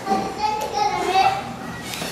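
A toddler babbling and vocalizing in a high-pitched voice, with drawn-out wordless sounds that slide in pitch.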